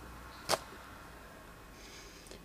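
Quiet room tone broken by a single short, sharp click about half a second in.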